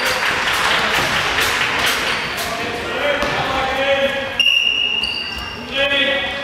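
Indoor handball play: the ball bouncing on the sports-hall floor in scattered knocks, under voices calling out across the hall.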